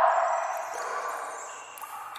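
Echoing sewer ambience of dripping water. A loud drip lands just before the start and rings away over about a second and a half, with steady hollow dripping under it.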